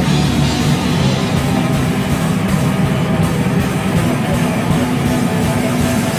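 Screamy post-hardcore band playing a song live, with electric guitar and drum kit, loud and dense throughout.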